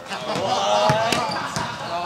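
A basketball bouncing on a gym's hardwood floor, several sharp bounces, with people talking over it.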